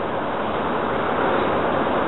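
A steady, even rushing hiss with no words: the background noise of a low-quality recording, heard in a pause between spoken phrases.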